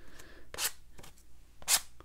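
Plastic credit card scraping across wet watercolor paint on cotton cold-press paper: two short, scratchy strokes about a second apart.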